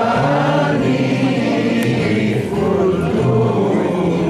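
A man singing a song, accompanied on acoustic guitar, through a microphone and PA.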